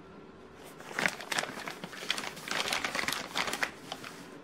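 Clear plastic packaging around a toy figure crinkling as it is handled and pulled flat, with irregular crackles starting about a second in.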